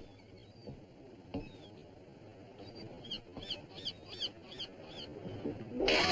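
A few faint knocks, then a bird chirping in a quick run of about seven short falling notes. Music comes in loudly at the very end.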